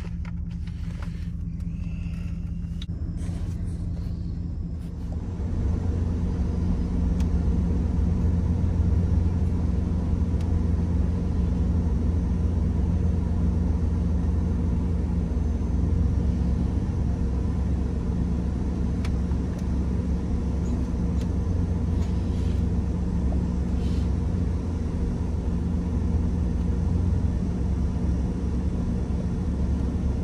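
Pickup truck driving on a dirt road, heard from inside the cab: a steady low rumble of engine and tyres that grows louder about five seconds in and then holds.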